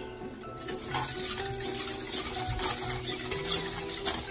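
A utensil stirring a thick egg-yolk and sugar paste in a metal pot, with quick repeated scraping strokes. Background music with steady held notes plays underneath.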